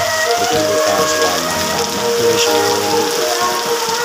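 Heavy rain pouring steadily onto foliage and ground, with music and a melodic voice over it.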